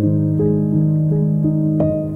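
Solo piano playing a slow, gentle melody over held low bass notes, with a new chord struck near the end.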